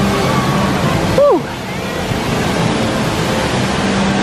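Artificial waterfall pouring over rockwork in a steady rush, mixed with the murmur of a crowd.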